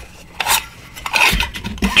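The sliding lid of a pen presentation box being slid off, scraping and rubbing, with a sharp click about half a second in.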